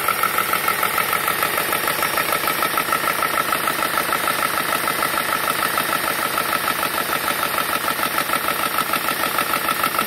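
GX 18-volt battery-powered PCP air compressor running steadily under load, its piston pumping in a fast, even pulse as it fills a PCP air rifle's air reservoir.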